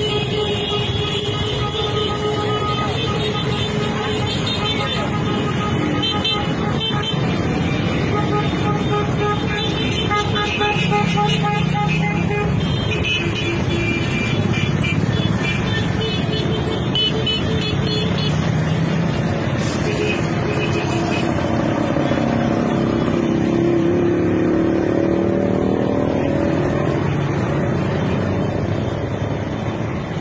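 Road traffic of motorized tricycles, motorcycles and cars passing close by, with vehicle horns honking repeatedly, mostly in the first half, and people's voices mixed in.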